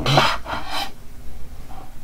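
Graphite pencil scratching across paper in two quick strokes in the first second, then fainter. These are short fur strokes that make a drawn outline fuzzy.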